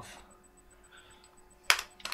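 Quiet room tone, then one sharp click near the end followed by a couple of lighter clicks, from hands handling small hard parts.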